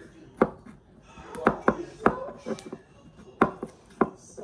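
A kitchen knife slicing a cucumber into rounds, with about six sharp, irregularly spaced knocks as the blade cuts through and strikes the countertop.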